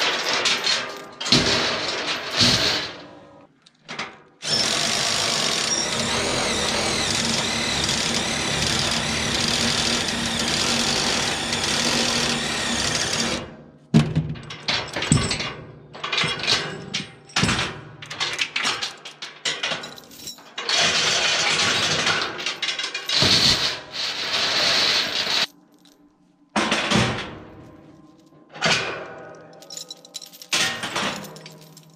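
A cordless drill running in long steady stretches, one of about nine seconds starting some four seconds in and two shorter ones past twenty seconds, each cutting off abruptly, used to work the ratchet binders on trailer tie-downs. Between the runs, steel load chains clank and rattle as they are unhooked and handled on the trailer deck.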